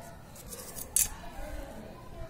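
Pencil and plastic ruler being handled on paper: faint scratching with one short, sharp scrape about a second in.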